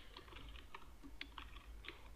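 Computer keyboard typing: a quick, irregular run of about ten faint keystrokes.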